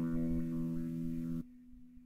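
The song's closing chord, held steady on electric guitar, cuts off abruptly about one and a half seconds in, leaving one faint note ringing on briefly.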